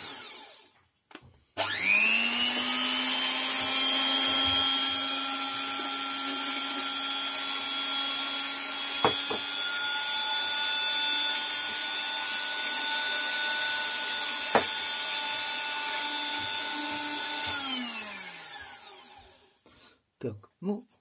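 The opened-up Scarlett SC 042 hand mixer's electric motor spinning up about a second and a half in, then running with a steady whine, two sharp clicks along the way, and winding down with falling pitch near the end. The run works freshly sprayed penetrating lubricant into its dry front and rear shaft bushings.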